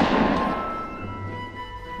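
Shotgun blast dying away as a noisy rumble that fades out over about a second and a half, with steady background music underneath.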